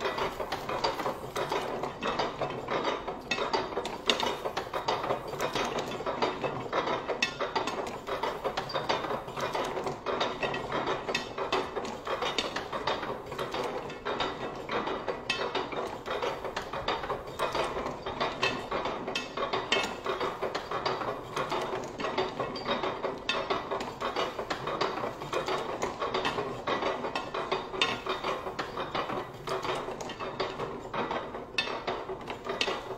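Antique platen job press with a round ink disc and large flywheel running, its rollers, gears and platen linkage making a continuous fast clatter of clicks.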